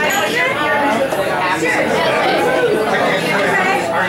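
Many people talking at once in a crowded bar, a steady hubbub of overlapping conversations.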